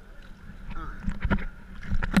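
Sea water sloshing and splashing against a camera held at the surface in small choppy waves, with a run of sharp, irregular splashes in the second half.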